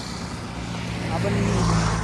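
Road traffic passing on a highway: a low engine hum with tyre noise that grows louder toward the end as a vehicle approaches.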